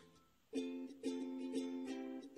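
Background music: repeated chords on a light plucked string instrument, coming in about half a second in after a brief quiet gap.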